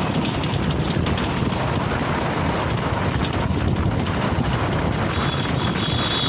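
Steady wind rush and road noise from a vehicle moving along a road, with wind buffeting the microphone. A steady high-pitched tone comes in about five seconds in.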